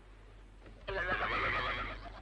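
A sea lion calling: one loud, wavering cry lasting about a second, starting about a second in.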